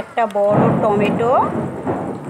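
A loud rumble of thunder rolls in about half a second in and fades near the end, with a voice over its start.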